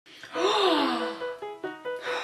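A woman's long appreciative sigh, an "mmm" that rises and then falls in pitch, as she breathes in the scent of a cosmetic product. Background music with sustained notes plays under it and carries on after it.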